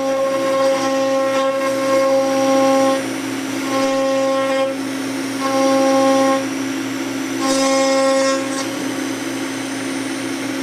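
CNC router spindle running with a steady whine, a fuller, louder tone coming and going in four stretches of one to three seconds as the bit cuts into a wooden board.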